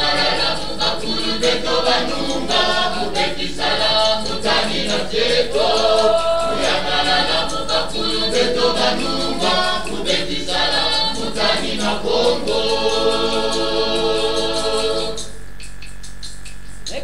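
Choir singing a Bundu dia Kongo hymn, several voices moving together in harmony. Near the end they hold one long chord, then break off.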